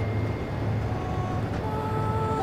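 Steady low rumble of a moving bus heard from inside the passenger cabin.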